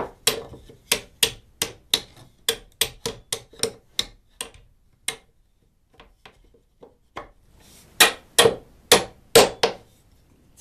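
Hammer striking the head of a steel carriage bolt, driving it through drilled holes in a 2x4 leg and side rail. There are steady light taps, about three a second, then a pause with a few faint taps, then a handful of harder blows near the end.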